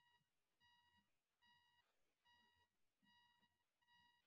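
Near silence with a faint electronic beep repeating evenly, a little faster than once a second, each beep short and steady in pitch.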